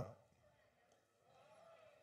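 Near silence: faint room tone, with a faint tone that rises and falls briefly near the end.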